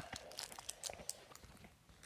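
Faint handling noise of a handheld camera being picked up and turned: a sharp click at the start, then soft rustling and scattered small clicks.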